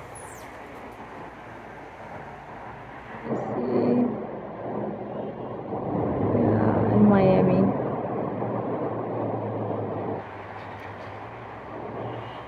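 Road traffic on a highway: a steady hiss of passing vehicles that swells about three seconds in and drops back around ten seconds.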